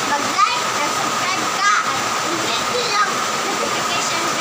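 A girl's voice in a few short bursts of talk or laughter over a constant, fairly loud background hiss with a faint steady whine.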